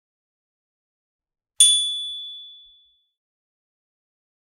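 A single bright, bell-like ding about one and a half seconds in, after silence. It rings out with a clear high tone and fades over about a second and a half.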